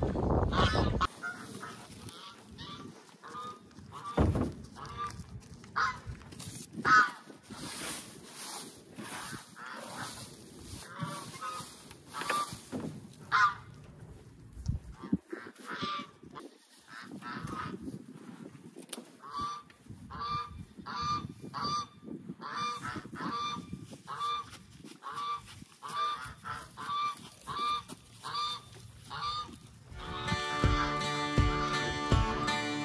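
Repeated honking animal calls, irregular at first, then a steady run of about three calls every two seconds through the second half. A brief low rumble comes at the very start.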